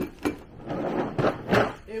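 Steel wrenches and sockets clinking and rattling in a tool case as it is rummaged through, with a sharper clack about one and a half seconds in.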